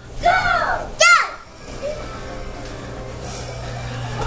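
A child's high-pitched voice calling out twice in about the first second, followed by a steady low hum.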